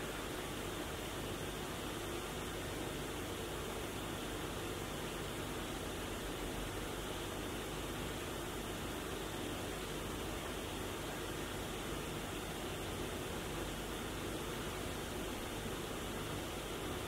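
Steady, even hiss of room tone, with no other sound standing out.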